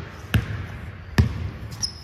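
Basketball dribbled on a hardwood gym floor: two sharp bounces a little under a second apart. A brief high squeak comes near the end.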